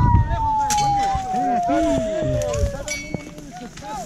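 Untranscribed voices of people in the scrub, with low thumps and rustling of movement through brush, loudest at the start. Over them a long steady tone slides slowly down in pitch and stops a little before three seconds in.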